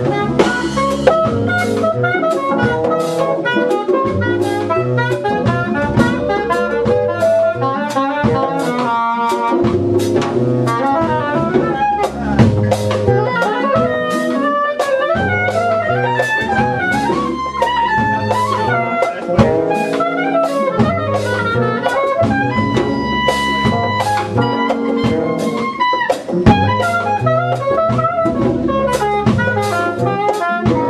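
Live jazz band playing: soprano saxophone over electric bass, Rhodes electric piano, drum kit and congas, with the bass repeating a low line and cymbals keeping time.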